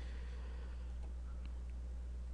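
Steady low electrical hum under faint room noise, with a couple of faint ticks near the end.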